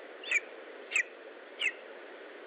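Lesser spotted eagle nestling calling: three short, high calls about two-thirds of a second apart, over a steady hiss.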